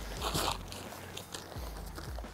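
Soft crinkling and rustling of a deflated inflatable swag's black fabric as it is rolled up and pressed down by hand to squeeze the last air out.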